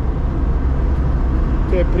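Steady low engine and road drone inside the cabin of a small older car on the move.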